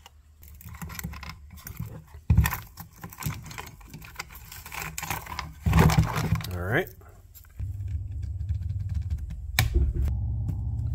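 Small metallic clinks and rattles of a Homelite chainsaw's cover and parts being handled and worked loose, with a sharp knock about two seconds in and a louder scraping, clattering patch near the middle. A steady low hum starts near the end.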